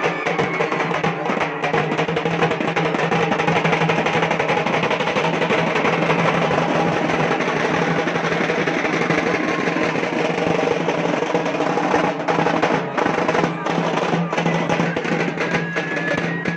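Loud, continuous drumming and percussion with dense crowd noise underneath.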